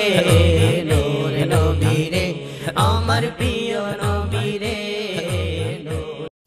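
Bengali Islamic naat music: layered male voices sung over a deep bass beat that swells about every 0.8 seconds.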